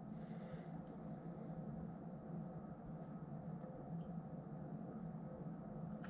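Quiet room tone with faint sounds of beer being sipped from a glass, and a couple of soft faint ticks.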